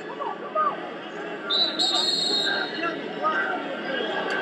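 Arena crowd murmuring, with a short, high referee's whistle about a second and a half in, stopping the wrestlers on a stalemate.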